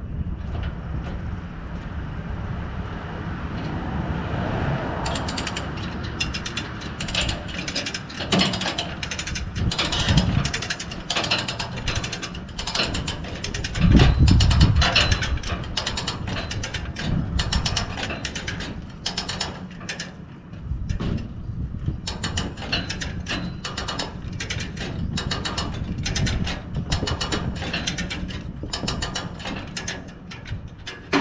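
Come-along hand winch being ratcheted, a long run of sharp clicks at about two to three a second, as it pulls a non-running truck onto a car trailer. A steady low rumble runs underneath, with a louder low burst about halfway through.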